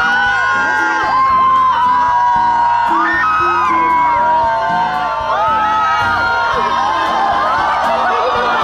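A crowd of fans cheering and screaming in many overlapping high voices over music.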